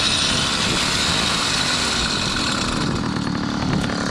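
Small engine of a motorized bicycle running steadily at idle.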